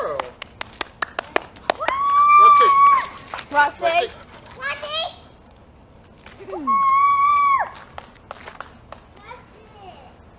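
A whistling dog ball thrown through the air, giving two long steady whistles about four seconds apart, the first falling in pitch as it ends. Between and before the whistles come scattered light clicks and brief voice sounds.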